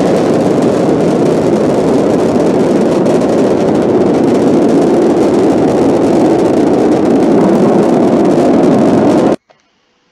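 Space Shuttle Discovery's solid rocket boosters and main engines during ascent: a loud, steady, deep rushing noise that cuts off abruptly near the end.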